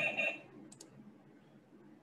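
Two quick computer mouse clicks close together, about three-quarters of a second in, over a quiet room.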